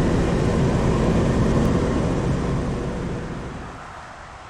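Car driving at highway speed, heard from inside: steady tyre and engine rumble with road hiss, fading out over the last second or so.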